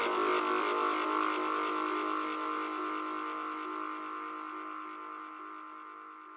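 Psytrance music: a held electronic synthesizer chord with no beat, slowly fading.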